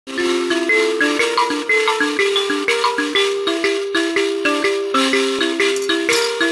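Mbira (thumb piano) played with both thumbs: a quick, steady repeating pattern of plucked metal-key notes, several a second, starting right at the beginning.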